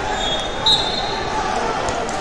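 Crowd chatter filling a large tournament hall, with a brief shrill tone about two thirds of a second in.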